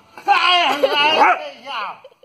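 A dog vocalizing in a loud, wavering whine-grumble, like talking back, lasting about a second, with a shorter whine near the end.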